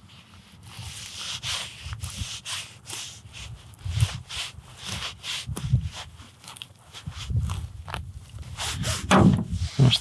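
Knife filleting a pheasant breast off the breastbone: irregular soft scrapes, rips and rustles of meat, skin and feathers being cut and handled.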